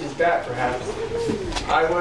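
A man's voice speaking in a small room.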